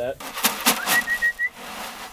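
A few sharp knocks, then a person whistling a short single note that slides up and holds for about half a second.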